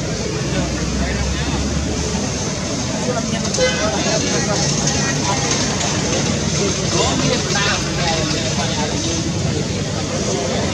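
Indistinct voices over a steady, dense background noise.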